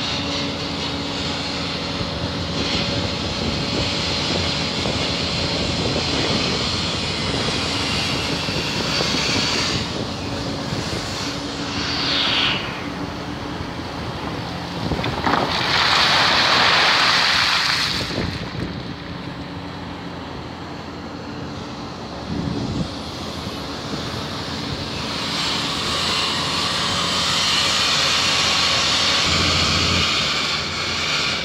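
Hitachi excavator with a 36-metre long-reach boom, its diesel engine and hydraulics running steadily while the boom works. A louder rushing noise rises for about two seconds just past the middle.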